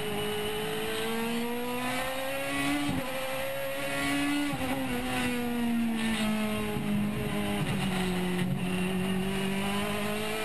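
Onboard sound of a Toyota Corolla Super TC 2000 race car's engine running hard on track. The pitch climbs, breaks briefly about three seconds in, climbs again, then falls steadily through the middle as the car slows for a corner, and rises again near the end.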